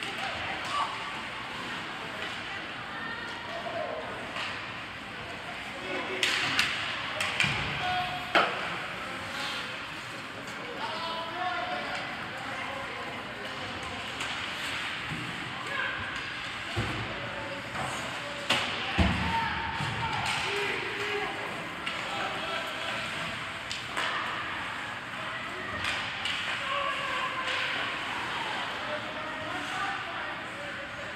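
Youth ice hockey game in an echoing indoor arena: spectators talking and calling out, with sharp knocks of sticks, puck and boards. The knocks are loudest in a cluster about six to nine seconds in and again around nineteen seconds.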